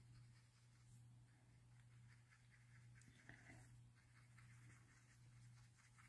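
Near silence: faint strokes of a glitter brush pen on cardstock over a steady low hum.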